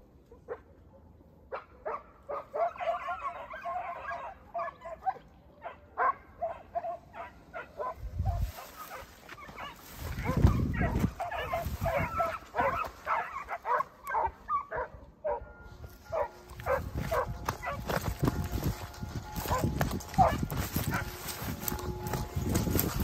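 Segugio Italiano hounds baying: a run of short, high, pitched barks and yelps that starts about a second and a half in and keeps coming, with bouts of low rumble on the microphone mixed in during the second half.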